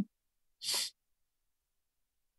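A single short breathy puff of noise from a person, about a third of a second long, a little over half a second in, in otherwise dead silence.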